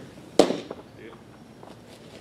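A baseball smacking into a catcher's mitt: one sharp pop about half a second in, with a short ringing tail.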